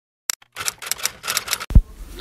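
Editing sound effect: a quick, irregular run of sharp clicks like typewriter keys or a camera shutter, ending near the end in one short, deep boom.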